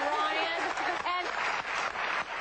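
Voices talking, then about a second in a short burst of studio audience applause.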